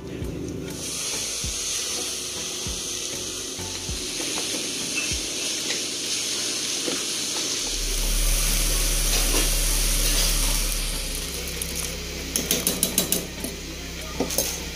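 Meat and onions frying in hot oil: a steady sizzling hiss. Near the end comes a quick run of sharp knocks.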